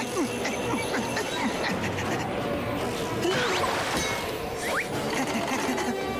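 Cartoon storm soundtrack: a dense rushing wash of sound effects with short sliding tones, under music. A brief laugh comes about four seconds in.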